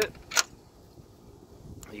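One sharp click, followed by faint low background noise.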